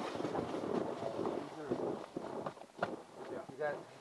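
Indistinct men's speech for the first couple of seconds, then a few sharp clicks, the clearest one about three seconds in.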